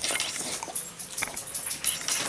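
A puppy close to the microphone, licking and smacking its lips and shifting its paws on a rubber balance ball: a run of light clicks and scuffs.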